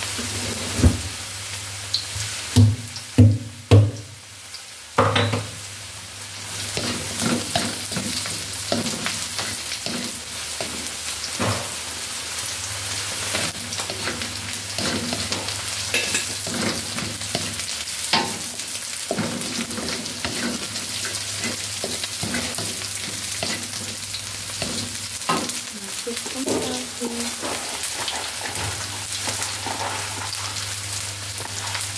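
Shallots and garlic frying in a little oil in a pan, a steady sizzle, while a spatula stirs them. A few sharp knocks of the spatula against the pan in the first few seconds, then lighter scraping clicks.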